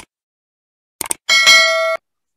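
Sound effects of a subscribe animation: quick mouse clicks at the start and again about a second in, then a notification bell ringing in several steady tones that cuts off suddenly.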